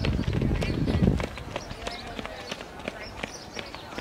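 Sprinters' footsteps on a synthetic running track: many quick, light footfalls, loudest in the first second and then fainter as the runners ease off past the finish.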